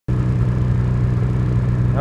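Snowmobile engine running steadily at low revs, a low, even drone with no change in pitch.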